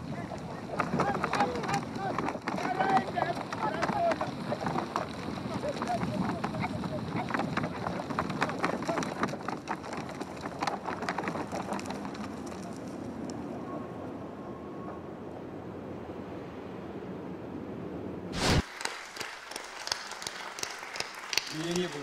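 A herd of reindeer running in a corral, many hooves clattering under short shouting voices, easing into a steadier noise. About 18 seconds in the sound cuts off abruptly and audience applause follows.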